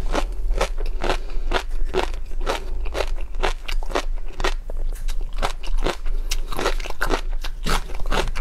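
Close-miked chewing of raw shrimp and tobiko: a steady run of wet crunches and crackles, about two to three a second.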